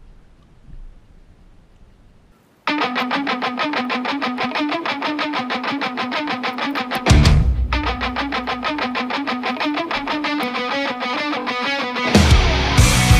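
Background rock music: after a quiet opening, a distorted electric guitar starts about two and a half seconds in with a fast, evenly repeated picked riff, and heavy drums and bass come in a little past halfway.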